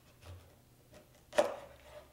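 A chef's knife chopping down through a butternut squash and striking the wooden cutting board with a single sharp knock about one and a half seconds in, followed by a short fading tail.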